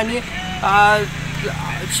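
A man's voice, briefly, over a steady low hum.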